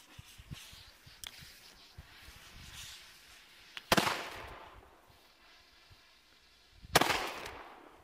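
Two sharp bangs from Weco Titan flash-bang firecrackers (Blitzknall), about three seconds apart, each trailing off in a short echo.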